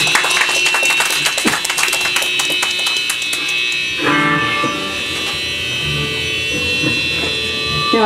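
Live rock band with electric bass, guitar and drums playing loudly, the drums striking hard and fast. About halfway the drumming stops and the song ends on a held, ringing chord from the amplified guitars, with a steady high whine.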